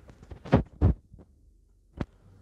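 Two heavy thumps about a third of a second apart, close to the microphone, with a few lighter clicks around them and one sharp click at the end.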